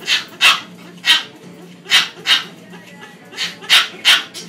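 A dog barking repeatedly, about seven short, sharp barks at uneven intervals.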